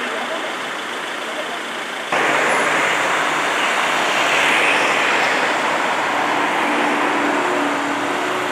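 Street traffic noise: a steady rush of running and passing vehicles, which gets suddenly louder about two seconds in, with a faint low hum near the end.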